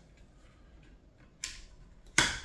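Faint handling noise as battery wires are stuffed into an airsoft rifle's stock, with one sharp click about one and a half seconds in.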